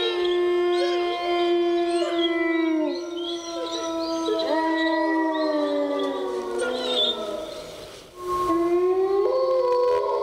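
Several overlapping long howls, each holding a steady pitch and sliding down at its end, like a chorus of wolves howling; the sound dips about eight seconds in, then the howls start again.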